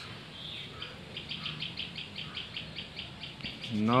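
A small bird in the background calling a rapid, even series of faint high chirps, about seven or eight a second, starting about a second in.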